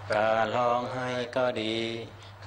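A group of Thai Buddhist monks chanting together, a steady sung recitation in Thai and Pali on held, slightly wavering notes with short breaks between phrases.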